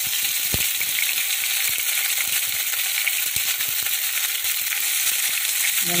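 Hot oil sizzling in a nonstick kadai as curry leaves and whole spices fry in it: a steady hiss with scattered small pops and clicks, the sharpest about half a second in.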